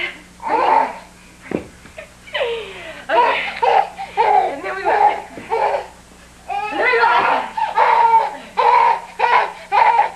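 A young child laughing in repeated short bursts, with one thump about one and a half seconds in and a faint steady hum underneath.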